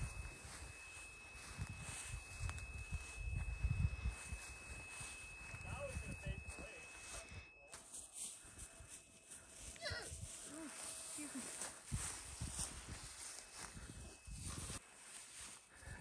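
Faint, distant voices over a low, gusting rumble of wind on the microphone, with a thin, steady high whine through the first half.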